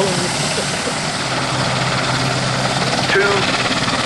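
Royal Navy Merlin HM1 helicopter's three turbine engines and rotor in a hover: a loud, steady wash of noise with a low hum underneath.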